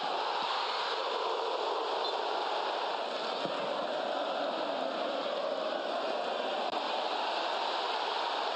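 Steady, even rushing ambient noise picked up by a pitch-side microphone at a football ground, with no clear voices standing out.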